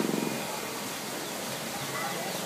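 A brief low, rapidly pulsing vocal rumble in the first half-second, then a steady background hiss.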